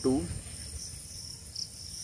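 Insects chirring steadily in the background: a continuous high-pitched trill that holds through the pause in speech.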